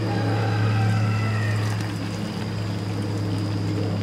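Water spraying from the rose of a long-spouted 5-litre Haws watering can onto bonsai foliage and soil, a steady fine spray, over a steady low hum.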